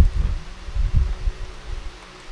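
A run of low, irregular knocks and rumble that fade toward the end: the handling noise of writing with a stylus on a pen tablet, carried through the desk to the microphone.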